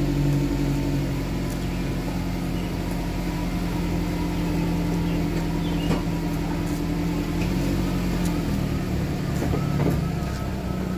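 Nissan Rogue SUV engine idling steadily close by, a constant low hum. A single sharp knock sounds about six seconds in.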